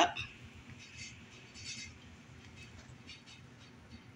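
Faint sizzling of an omelette cooking in a frying pan, with a few soft crackles.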